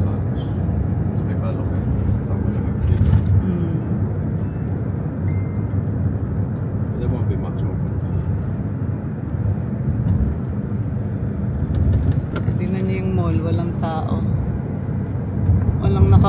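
Car cabin noise while driving: a steady low road and engine rumble, with faint voices in the car near the end.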